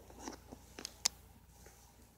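Crepe-paper streamers and piñata paper crinkling and rustling as a cat pounces on and paws at them: a short rustle, then a few sharp crackles, the loudest about a second in.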